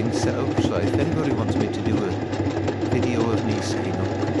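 Electric sewing machine running steadily, its needle stitching fill thread into denim.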